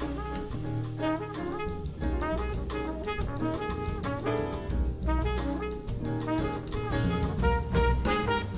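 Small jazz combo playing: trumpet and tenor saxophone sound a melody line together over upright bass and drum kit.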